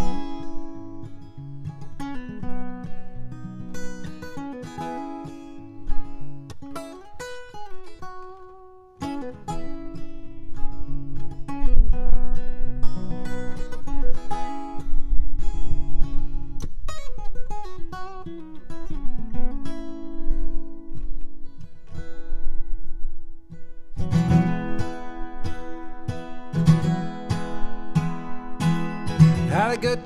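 Steel-string acoustic guitar playing an instrumental break: picked melody notes over a bass line. About six seconds before the end it turns fuller and louder, with regular strummed bass strikes.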